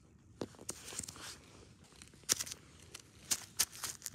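Handling noise as plastic toy animal figurines are moved by hand over snow and rock: scattered clicks and soft rustles, with a few sharper clicks in the second half.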